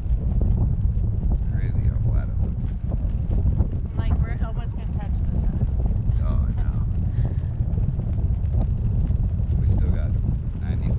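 Wind buffeting the microphone of a camera hanging under a parasail high above the sea: a loud, steady low rumble. Faint voices come through it a few times, around two, four and six seconds in.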